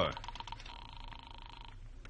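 A telephone's ringing signal heard down the line, one buzzing tone of about a second: a radio-drama sound effect of a call going through before it is answered.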